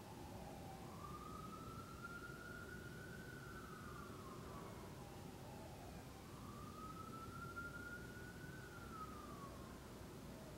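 A faint, distant siren wailing, its pitch slowly rising and falling twice, over a quiet steady room hum.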